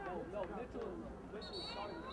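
Voices calling and shouting across an outdoor football field, with no clear words. A thin steady high tone comes in near the end.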